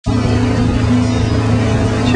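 Motorboat engine running at steady cruising speed, a constant low drone under a rushing noise of wind and water.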